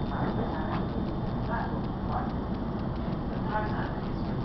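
Passenger train running, heard from inside the carriage: a steady low rumble of wheels on track with a quick run of faint clicks.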